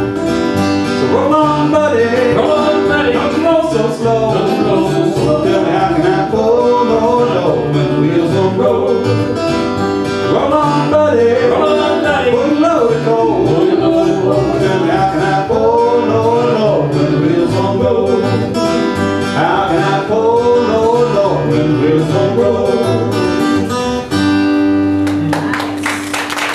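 Live acoustic bluegrass band playing: strummed acoustic guitars over an upright bass, with a lead melody line bending in pitch. Near the end the band settles on one held final note.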